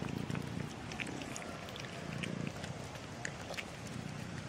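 A cat purring close to the microphone, a low pulsing rumble that swells and fades, with faint short ticks scattered over it.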